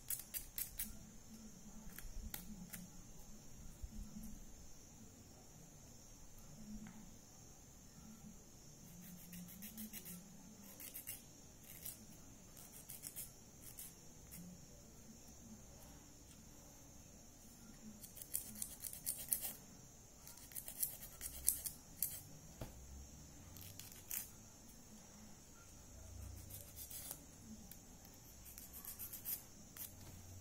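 Nail file scraping across the tips of natural fingernails in bursts of quick short strokes, squaring off the nail edges. A faint steady high hiss sits under it.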